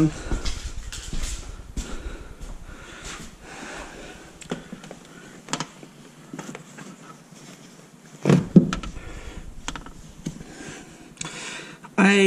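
Rustling of clothing and small knocks as a man pulls on and ties a work boot's laces, close to the microphone. About eight and a half seconds in, a short vocal sound is the loudest thing.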